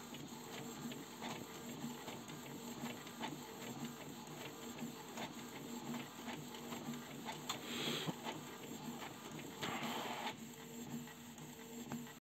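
Canon G3411 and Epson L132 ink-tank inkjet printers printing in fast mode: the print-head carriage shuttles with a pulsing motor hum and regular clicks. There are two brief rushes of noise, about eight and ten seconds in.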